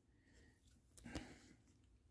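Near silence, with one faint, brief handling sound about a second in, a soft click and rustle as a baseball card is set down.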